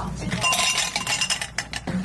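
Ice cubes dropped into a glass tumbler, a quick clatter of clinks with the glass ringing briefly, starting about half a second in and lasting until near the end.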